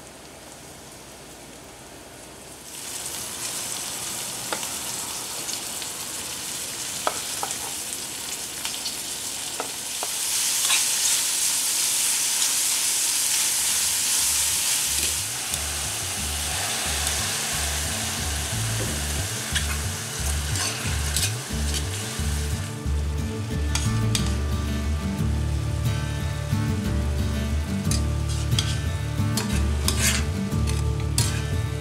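Food frying in oil in a stainless steel frying pan: a faint sizzle at first, turning into a loud steady sizzle about three seconds in and loudest from about ten to fifteen seconds. In the second half, sharp clicks of a utensil against the pan come through as the food is stirred.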